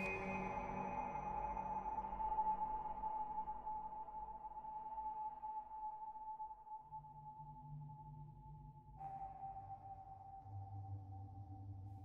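Ambient electronic music from a Mutable Instruments modular synthesizer: sustained drone tones, with a high held note slowly sinking. New low notes come in about seven and ten seconds in, and a fresh chord enters about nine seconds in.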